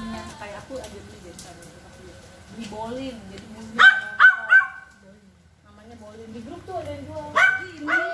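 Pembroke Welsh corgi barking: three quick sharp barks about four seconds in, then two more near the end.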